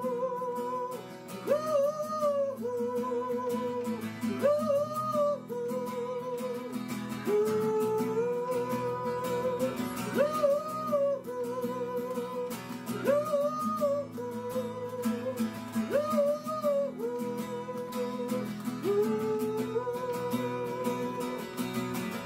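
Acoustic guitar strumming steady chords under a man's wordless sung melody, the opening of a slow original song. Each vocal phrase slides up into a long held, wavering 'ooh' note.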